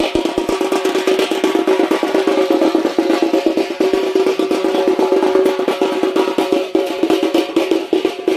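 Festival drumming: fast, continuous drum beats with a steady pitched tone held over them.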